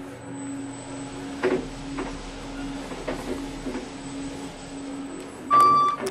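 A steady low mechanical hum with a few light clicks, then a loud, short electronic beep about half a second long near the end.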